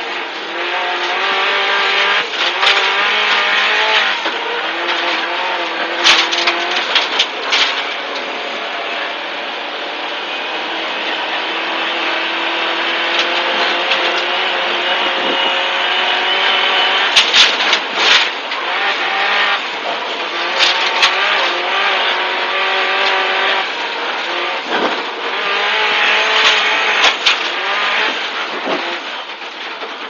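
Subaru Impreza WRX STI rally car's turbocharged flat-four engine, heard from inside the cabin, revving hard and shifting repeatedly at full stage pace on snow, its pitch climbing and dropping with each gear change over steady road noise. Several sharp knocks cut through, the loudest two-thirds of the way in, and the engine note falls away near the end as the car slows.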